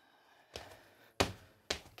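Sneakered feet landing on a wooden floor in double-leg hops over mini hurdles, with two bounces between hurdles. A soft thud comes about half a second in, then two sharp landings about half a second apart in the second half.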